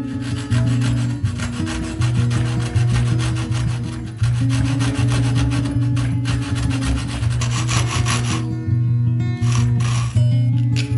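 Japanese pull saw cutting through a small wooden block held in a vise, with a steady run of rasping back-and-forth strokes. The sawing pauses briefly near the end before starting again.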